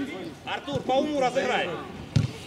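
Men's voices talking on an outdoor football pitch, a few words from the players rather than commentary.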